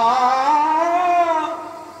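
A man's voice holding one long drawn-out note at the end of a declaimed line, wavering slightly in pitch and fading away near the end.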